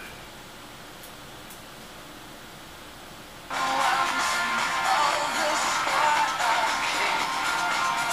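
Insignia tabletop HD radio switching on. After a few seconds of faint hiss, its speaker abruptly starts playing music from the FM station it is tuned to.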